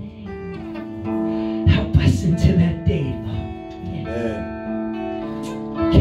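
Live worship music: an electric guitar strummed in held chords, with a man singing along.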